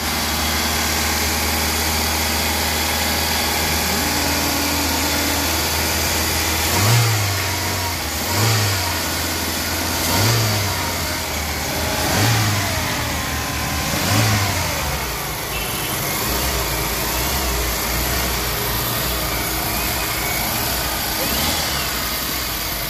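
Hyundai i20's four-cylinder petrol engine idling with the bonnet open, blipped five times in quick succession about a third of the way in, each rev rising and dropping back within a second, then settling to a steady idle.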